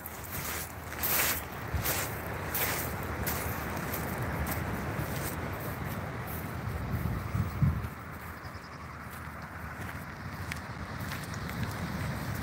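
Strong wind rushing over the phone's microphone, a steady noise, with a few short knocks in the first three seconds.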